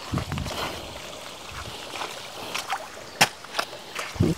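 Water trickling out of a crack in the rock, a steady faint hiss, with a few sharp clicks of footsteps on loose stones and gravel, the loudest about three seconds in.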